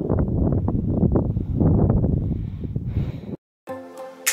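Wind buffeting the microphone in a low, gusty rumble for a little over three seconds. It cuts off abruptly, and soft music begins near the end.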